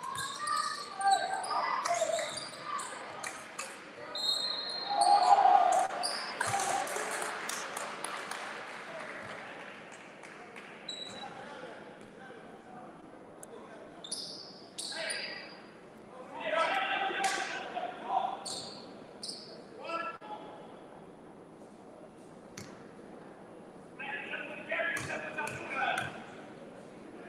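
Basketball game in a gym: a basketball bouncing on the hardwood floor, with shouting voices echoing in the large hall.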